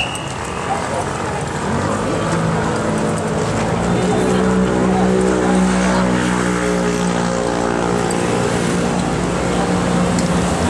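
A truck's engine running close by: a steady hum that grows in about two seconds in and holds to the end, loudest around the middle.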